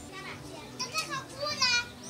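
Children's voices in the background: short, high-pitched calls and shouts of children playing, the loudest about one and a half seconds in.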